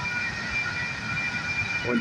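Railroad grade-crossing warning bell ringing steadily while the crossing signals are active, over a low rumble.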